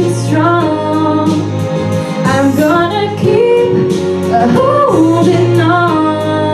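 A woman singing a pop song into a microphone, her voice sliding between notes, over steady instrumental accompaniment.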